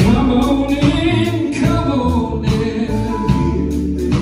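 Gospel song: a group of voices singing over a band with a steady beat and a strong bass line.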